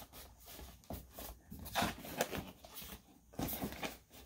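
Cardboard rubbing and scraping on cardboard as a tight-fitting printed sleeve is worked off a cardboard box, in a series of short irregular scuffs and rustles.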